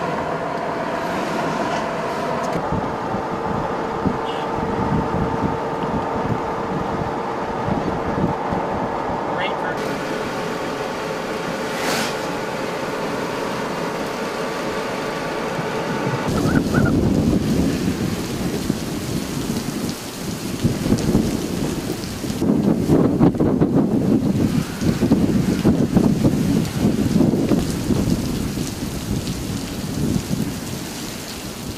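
Steady vehicle hum and road noise heard from inside the cab. About sixteen seconds in it gives way to heavy thunderstorm rain and wind, with loud rumbling surges near the end.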